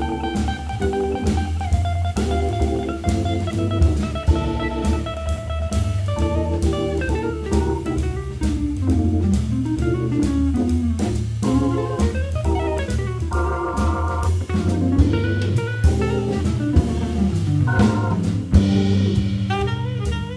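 Jazz organ quartet playing: organ with a steady bass line, electric guitar, drum kit and saxophone, with melodic lines running up and down over the groove.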